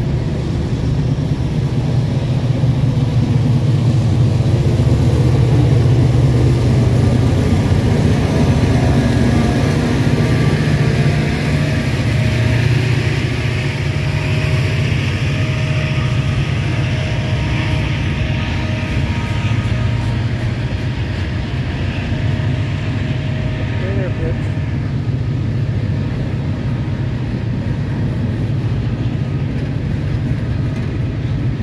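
CSX freight train passing at close range: the diesel locomotives' low engine rumble, loudest a few seconds in, then the long string of freight cars rolling by on the rails with a steady rushing wheel noise.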